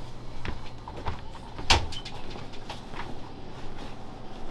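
A few light clicks and knocks, with one loud thump a little under two seconds in, over a steady low hum.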